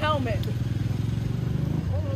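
Mitsubishi Triton pickup truck's engine running as it drives slowly past at close range: a steady low hum.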